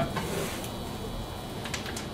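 Steady low background hiss and hum between sentences, with faint brief handling sounds near the end as a metal lid is lifted off the stopped centrifuge housing.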